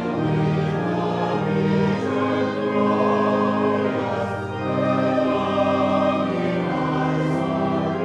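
A church congregation singing a hymn to organ accompaniment, in held notes moving phrase by phrase, with a brief lull between phrases about four seconds in.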